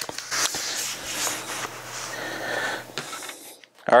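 A light knock, then about three seconds of cloth rustling and sliding as a laptop is shifted and turned over on a towel, cutting off a little after three seconds.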